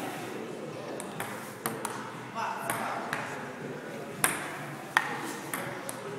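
Table tennis rally: a ping-pong ball clicking sharply off paddles and the table, several irregularly spaced hits.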